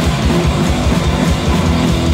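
A crust punk band playing live at full volume: heavily distorted electric guitars and bass over fast, driving drums, forming a dense, loud wall of sound.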